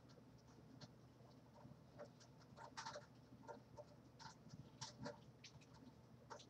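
Faint, irregular rustling and crackling of fingers pulling apart and fluffing coiled, product-softened hair.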